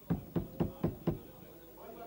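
Five quick, even knocks, about four a second, followed near the end by a faint voice.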